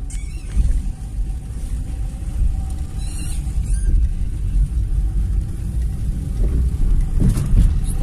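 Steady low rumble of road traffic on a wet street, with brief faint higher sounds about three seconds in.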